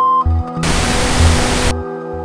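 A steady test tone from a video editing leader cuts off just after the start. About half a second later a burst of hiss-like test noise lasts about a second. Ambient background music with a pulsing bass runs underneath.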